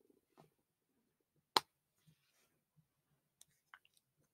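Mostly quiet, with one sharp click about one and a half seconds in and a few faint ticks and clicks near the end.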